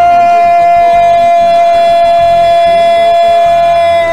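A football radio commentator's long goal cry, one drawn-out 'gooool' held loud on a single steady pitch.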